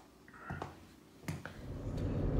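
A few faint, sharp clicks and knocks of household handling noise, with a brief squeak about half a second in. A low rumble fades in near the end.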